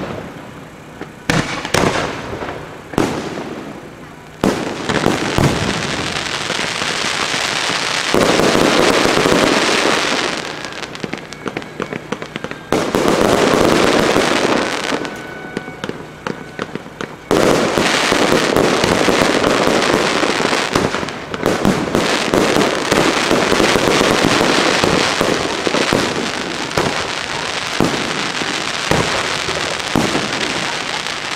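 Aerial fireworks show: a few sharp bangs of shells bursting in the first few seconds, then long stretches of dense, continuous crackling, broken by two short lulls.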